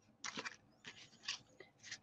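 Handmade card-stock greeting cards being handled and slid over a paper work mat: a few faint, short rustles and scrapes.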